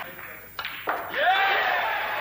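Two sharp clicks of snooker balls, about a third of a second apart: the cue tip striking the cue ball and balls knocking together on the table, in a large hall.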